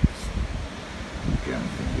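Wind buffeting the microphone as a low rumble, with a brief low thump right at the start.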